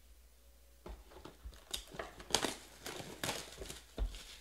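Plastic packaging of a trading-card hobby box crinkling and rustling in the hands as the box is picked up and handled, in a string of irregular crackles starting about a second in.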